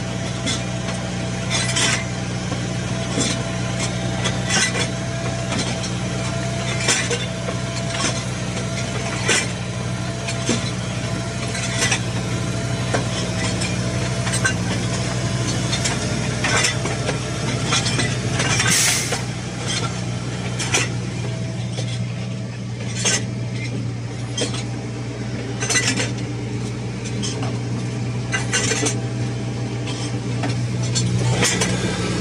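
New Holland T7040 tractor engine running steadily at a crawl, with irregular metallic clanks and rattles from the rear hose reel frame as it pays out the umbilical slurry pipe; one longer clatter comes about two-thirds of the way through.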